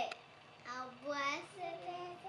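A young girl singing in a high voice, in two short phrases.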